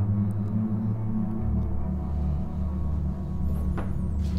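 Dark ambient background music: a low sustained drone, with a deeper bass note coming in about a second and a half in.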